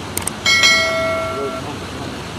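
A couple of quick mouse-style clicks, then a bright bell chime that strikes about half a second in and rings out over about a second: an edited-in subscribe-button and notification-bell sound effect.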